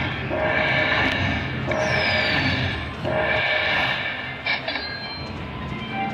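Panda Magic video slot machine playing its win sounds as the credit meter counts up a free-game win: a bright chiming phrase repeats three times, each about a second and a half long, followed by a short click about four and a half seconds in.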